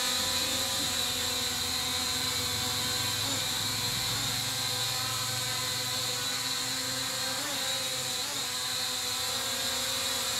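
Small JY019 quadcopter drone in flight, its propellers whining steadily with a few brief wavers in pitch.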